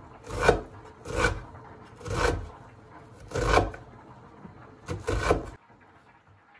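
Kitchen knife slicing through an onion and meeting a wooden cutting board, five slow, separate strokes about a second apart.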